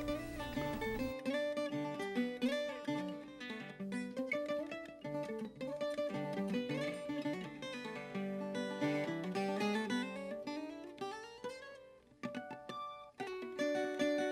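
Background music: a plucked acoustic string instrumental, note after note, with a brief pause about twelve seconds in.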